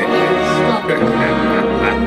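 Music played over a stage sound system, with steady held chords.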